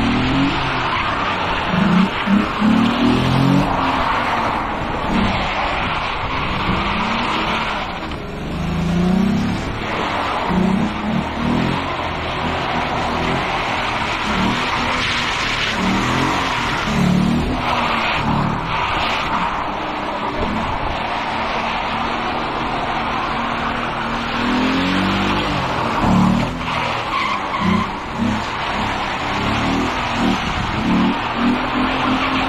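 Drift car engine revving up and down again and again, with tyres squealing and skidding through the slides.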